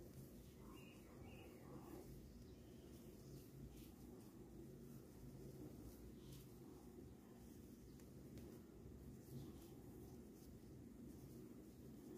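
Near silence: room tone with a faint steady low hum and a few faint soft ticks from a crochet hook working thick T-shirt yarn.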